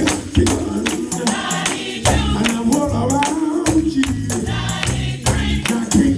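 Gospel choir singing with a lead voice, over a low bass accompaniment, with hands clapping a steady beat about twice a second.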